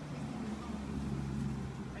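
An engine running steadily in the background, a low hum that grows a little louder through the middle.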